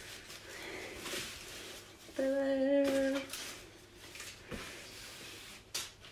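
A woman's voice humming one held note for about a second, a little past two seconds in, over soft rustling of the laptop's foam packaging sleeve as she handles and unwraps it, with a small click near the end.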